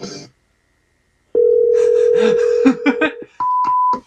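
A snatch of music cuts off, and after a second of silence a steady telephone line tone sounds for about two seconds, with voices talking over its second half. A short, higher-pitched steady beep follows near the end.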